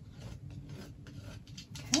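Pen marking along a wooden yardstick on a paper pattern over gauze fabric: a run of soft scratching and rubbing strokes, with the yardstick and fabric shifting on the table.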